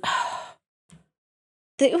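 A woman's sigh: one short breathy exhale of about half a second.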